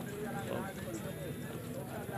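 Men's voices talking in the background, over the steps of a horse's hooves on dry dirt as it is led by the bridle.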